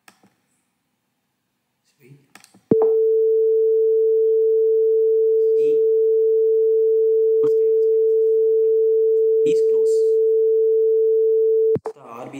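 PICSimLab's simulated buzzer, driven by a PIC16F877A microwave-oven program, sounds one loud, steady pure tone for about nine seconds. It starts a few seconds in and cuts off sharply near the end. It is the door-open alarm, set off by opening the simulated door with the RB3 key while the oven is running.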